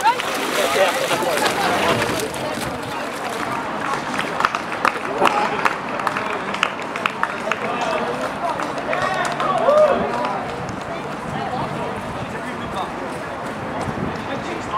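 Indistinct voices of people outdoors, calling and chattering with no clear words, over a steady background hubbub. Scattered short sharp clicks or knocks fall among the voices.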